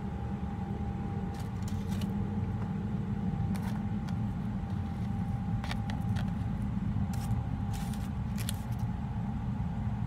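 A steady low hum with a faint held tone above it. Short crackles and clicks of a person eating a burger and fries come every second or so.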